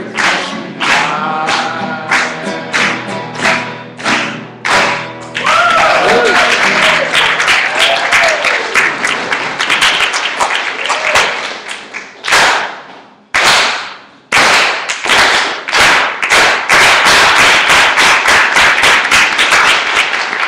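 A man singing to a strummed acoustic guitar for about the first five seconds, then an audience applauding with a few shouts. The applause dips briefly past the middle and picks up again.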